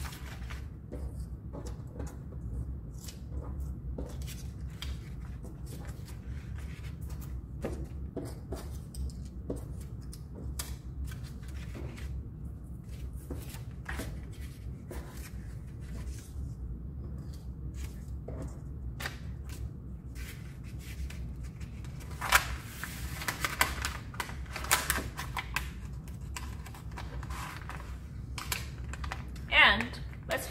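Paper handling: sticky notes peeled off a sheet of paper and stacked, with scattered small rustles and clicks. About two-thirds of the way through, a louder stretch of paper crinkling comes as the sheet is folded up.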